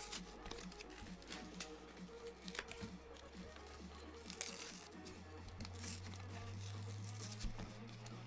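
Pokémon card blister pack being torn open by hand: cardboard backing tearing and plastic packaging crinkling in short, faint crackles, over quiet background music.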